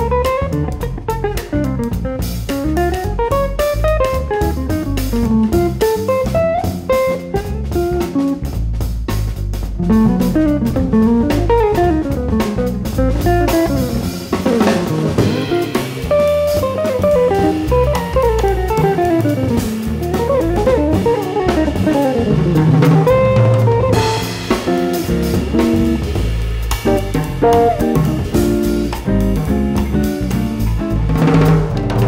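Jazz guitar trio: a semi-hollow electric guitar solos in fast runs that sweep up and down, over electric bass and a drum kit keeping time on the cymbals.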